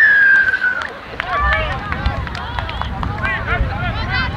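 A referee's whistle, one blast of just under a second that falls slightly in pitch, then many voices of players and spectators shouting and calling out.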